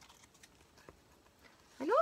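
Faint handling of a paper journal and its tags: a few soft ticks and light rustles in an otherwise quiet room. A woman starts speaking near the end.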